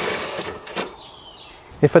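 Retractable washing line's cord running back into its wall-mounted plastic reel: a short whirring rush that fades, then a click under a second in.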